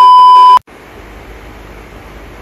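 A loud, steady 1 kHz test-tone beep, the sound effect added to a glitching TV colour-bar transition. It cuts off sharply about half a second in, leaving a steady low background hiss.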